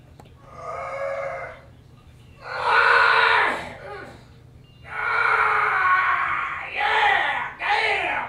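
A man's loud, wordless groans and yells in five bursts, the third and longest running about two seconds: the sound of someone straining hard on the toilet.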